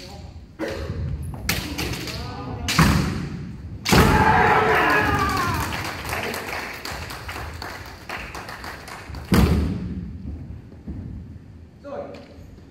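Kendo bout: stamping footwork on a wooden floor and bamboo shinai strikes, with shouted kiai. Sharp impacts come about half a second in, near 3 s, at 4 s with a long shout, and again just after 9 s.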